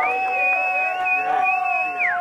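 Baseball players on the bench holding one long, steady yell while the pitch is delivered.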